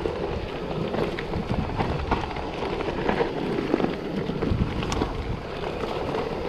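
Trek mountain bike rolling down a rough dirt singletrack, with tyre rumble and frequent small rattles and knocks from the bike over bumps. Steady wind noise on the microphone runs under it.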